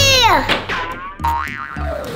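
Cartoon comedy sound effect: a pitched swoop that falls away steeply in the first half second, followed by background music with a light, regular beat.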